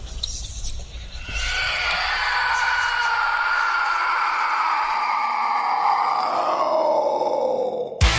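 A long, drawn-out groan-like sound that slowly falls in pitch for about six seconds, then cuts off suddenly.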